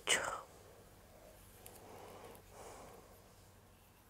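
A woman's voice finishing a word, then a quiet room with a few faint, soft noises.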